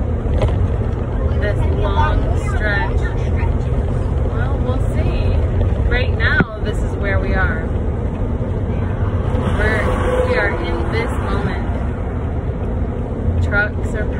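Steady low drone of an RV's engine and road noise heard from inside the cab while driving slowly, with the heater running on full to keep the engine from overheating. Voices talk over it at intervals, and there is one brief dropout about halfway through.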